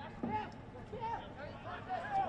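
Men's voices in short snatches, the words not caught, over the steady background sound of an open-air football ground.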